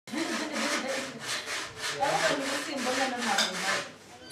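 Rhythmic hand scraping strokes in an even rhythm of two to three a second, with a voice in the background.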